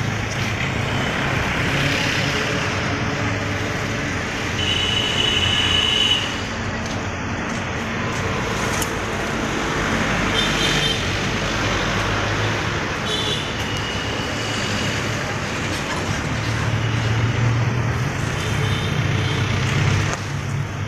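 Steady street traffic noise, with a low rumble and a few short high-pitched tones.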